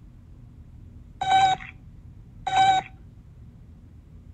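A cartoon robot beeping: two short electronic beeps of one steady pitch, about a second apart.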